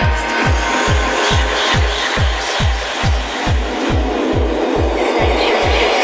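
Trance music played through a club sound system, driven by a steady four-on-the-floor kick drum at about 140 beats a minute.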